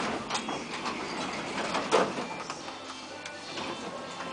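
KONE lift car and landing doors sliding open at a floor, a mechanical whirr with scattered clicks and a sharper click about two seconds in, with shop background music coming in through the open doors.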